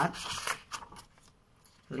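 Sheets of photocopied paper being flicked apart and counted off by hand, with a few short, crisp rustles in the first half second and a couple more just after.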